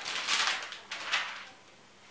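Clear plastic protective film rustling as it is peeled off a tablet, in a few noisy rushes that stop about one and a half seconds in.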